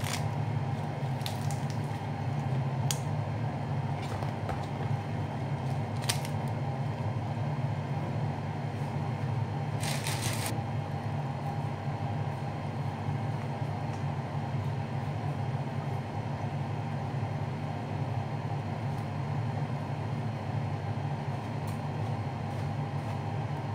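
Steady low mechanical hum of a kitchen appliance or fan, with a few faint clicks early on and a short crackle about ten seconds in, from food being handled at the counter.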